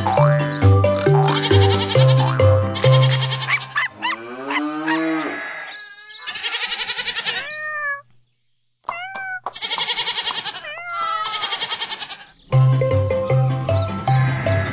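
Children's song music with a bouncing bass line breaks off about four seconds in for a run of cartoon farm-animal calls: a low sliding moo, then wavering bleats, with a short silence between them. The music comes back near the end.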